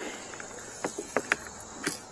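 Small plastic cable connectors clicking and knocking as they are handled and fitted at a portable solar panel's output lead, a handful of light clicks in the second half. Behind them a steady high-pitched insect drone.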